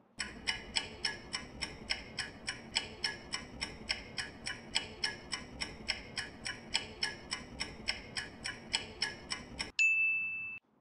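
Countdown-timer sound effect ticking steadily, about four ticks a second. Near the end the ticking stops and a steady electronic beep sounds, signalling that time is up.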